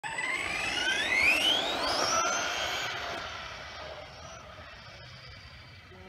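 ARRMA Senton 3S BLX RC truck's brushless motor whining under hard acceleration on a 2S LiPo, rising steadily in pitch for about two seconds. It then holds a high whine that fades away as the truck speeds off down the road.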